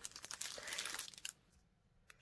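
Clear plastic wrapping on scrapbooking paper packs crinkling faintly as the packs are handled and slid across a table. It stops a little over a second in.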